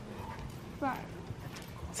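Faint hoofbeats of a horse moving over soft sand arena footing.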